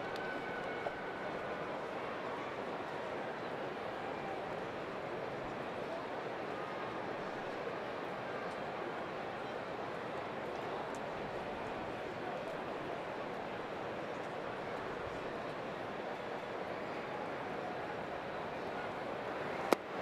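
Steady murmur of a ballpark crowd, with one sharp pop just before the end as the pitch, swung at and missed, smacks into the catcher's mitt.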